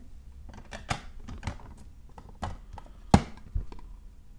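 Hard plastic graded-card slabs clicking and clacking as they are handled, set down on a stack of slabs and picked up. There are several separate sharp clicks, and the loudest comes about three seconds in.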